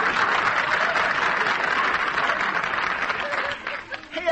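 Studio audience laughing and applauding after a punchline, dying away about three and a half seconds in.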